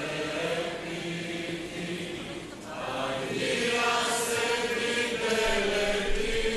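Slow hymn sung in Greek, asking the heavenly Father to bless the couple, with long held notes. There is a brief break between lines about halfway through.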